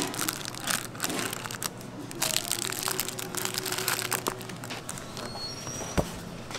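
Plastic wrappers crinkling and paperboard rustling as wrapped rice cakes are set by gloved hands into the compartments of a divided paper gift box. The crackles are irregular, thickest in the first half and thinning out toward the end.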